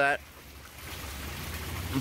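Pump-driven water running and splashing in an aquaponics fish tank, a steady wash of flowing water that swells a little toward the end.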